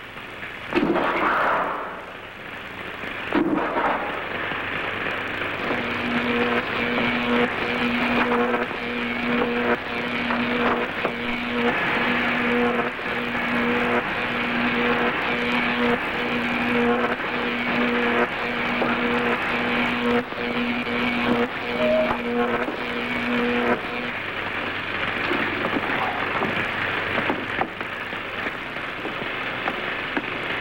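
Science-fiction machine-room sound effect: a steady rushing electrical hum, with a low electronic tone pulsing about once a second through the middle of the stretch, then stopping.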